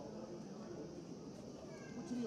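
Faint, distant shouts of footballers calling on the pitch, short gliding voice sounds over open-air stadium ambience.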